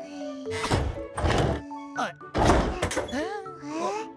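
Cartoon soundtrack: background music with several heavy thunks of metal locker doors, about a second apart. Near the end come the characters' wordless exclamations, which slide up and down in pitch.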